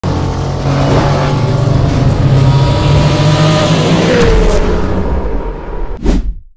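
Sports car engine running hard at speed, its pitch gliding down about four seconds in before the sound fades toward the end.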